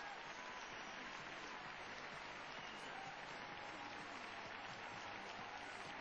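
Large arena crowd applauding steadily.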